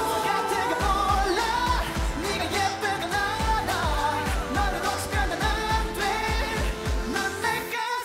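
K-pop dance song: male voices singing over a pop backing track with a steady kick-drum beat. Right at the end the bass and drums drop out.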